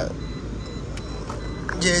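Steady low rumble of a Toyota car's engine and road noise heard from inside the cabin while driving, with a voice starting near the end.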